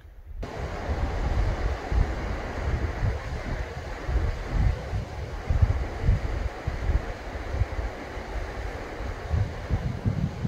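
Wind buffeting the microphone in irregular gusts over a steady rushing hiss, starting abruptly about half a second in.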